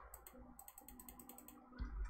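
Small stepper motor, faintly running as it jogs the bench-test Y axis, with a rapid light ticking, then a low thump just before the end.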